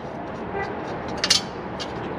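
A brief metallic clink about a second in as parts are handled inside the air-cleaner housing on the carburettor, over a steady background hiss.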